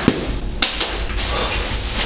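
A black plastic bag being handled and crinkled: two sharp crackles, one at the start and another about half a second in, then continued rustling.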